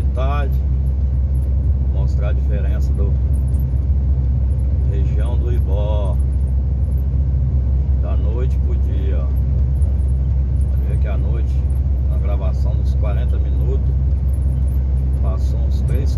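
Steady low drone of a semi-truck's diesel engine and road noise, heard inside the cab while cruising.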